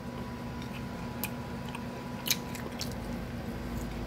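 A person chewing crunchy breaded popcorn shrimp, with a few sharp crunches; the loudest comes a little past the middle.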